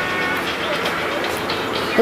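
Steady rushing noise of road traffic, a vehicle going by on the street.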